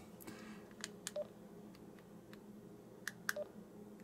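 Retevis RT52 handheld radio's controls being worked: several faint clicks, with two short beeps from the radio, one about a second in and one near the end.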